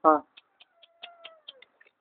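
A cat meowing faintly: one drawn-out meow about a second long that falls slightly in pitch, with a scatter of faint high ticks around it.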